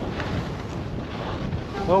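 Skis sliding over snow, with wind rushing over the camera's microphone: a steady, rough rushing noise with a heavy low rumble.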